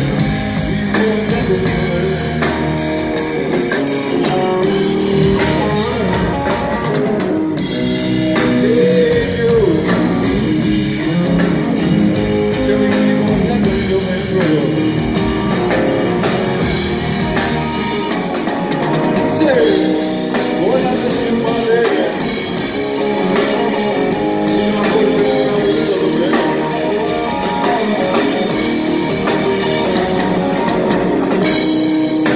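Live rock music: an electric guitar played through stacked amplifiers, with bending lead notes, over a full drum kit with cymbals, loud and continuous.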